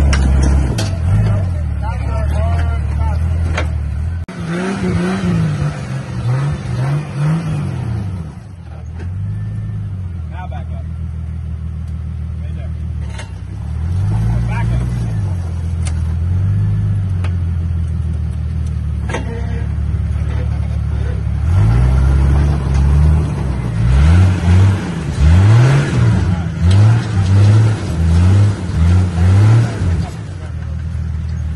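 Rock-crawling buggy's engine idling and being revved in short blips as it climbs over a rock ledge on big tires, the revs rising and falling again and again. A burst of revs comes early, the engine settles to a lower, steadier note in the middle, and a quick run of blips, roughly one or two a second, fills the last several seconds.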